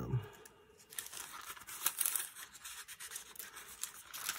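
Thin Bible pages being turned by hand: a run of papery rustles and flicks from about a second in.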